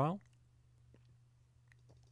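Faint clicks of a computer mouse button, a few around one second in and again just before the end as a folder is opened, over a low steady hum; the tail of a spoken word at the very start.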